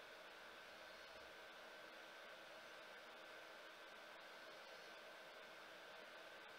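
Near silence: steady faint hiss of room tone, with a few faint constant hum tones underneath.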